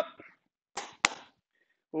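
A brief rustle, then a single sharp click close to the microphone about a second in, as a head-worn microphone is handled.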